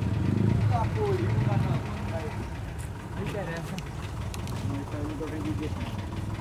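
Busy street-market background: several voices talking at a distance, over a low engine-like rumble that is louder for the first two seconds and then eases off.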